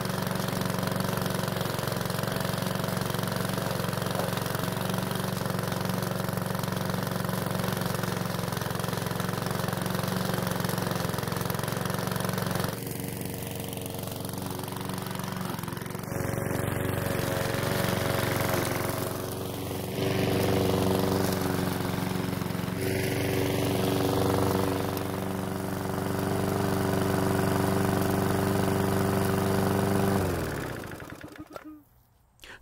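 Small single-cylinder engine of a PowerSmart self-propelled walk-behind lawn mower running steadily while mowing grass. The engine note shifts abruptly in pitch and level a few times.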